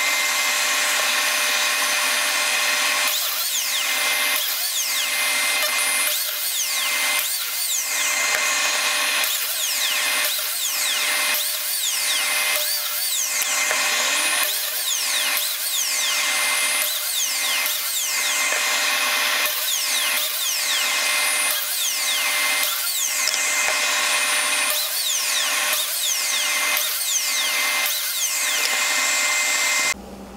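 Ryobi JM83K corded biscuit joiner running with a steady high whine, its blade plunged again and again into the edges of 3/4-inch red oak boards to cut biscuit slots. The pitch dips briefly with each cut, about once a second.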